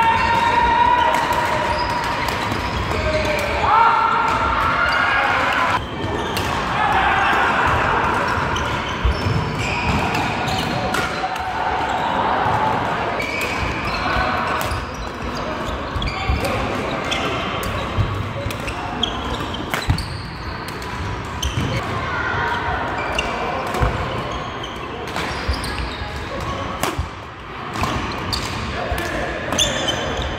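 Badminton play in a large sports hall: repeated sharp racket strikes on shuttlecocks, with players' voices calling out over the hall's background chatter.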